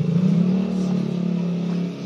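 A motor engine running steadily, its hum rising a little in pitch at the start.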